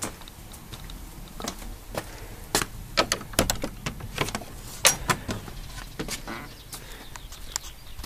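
A metal door latch worked by hand: a run of sharp clicks and clacks, thickest in the middle seconds, as the door is unfastened and opened.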